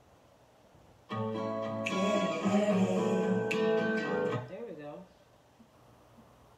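Acoustic guitar chords strummed starting suddenly about a second in and ringing for about three seconds, followed by a short wavering vocal note as the sound dies away.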